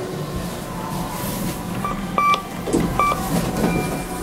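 KONE MiniSpace traction elevator car running with a steady low hum. Two short electronic beeps come about two and three seconds in, the elevator's signal as the car reaches its floor.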